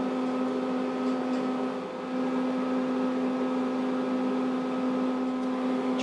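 Steady electrical hum made of several fixed pitches, from running laboratory equipment, with a brief dip about two seconds in.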